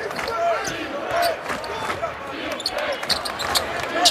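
Basketball dribbled on a hardwood court, with short sneaker squeaks from players cutting, over the murmur of an arena crowd.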